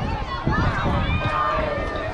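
Several voices at once, talking and calling out across the ball field, with a low rumble underneath.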